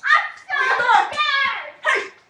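Children's voices, loud and high-pitched, calling out in three bursts with no clear words.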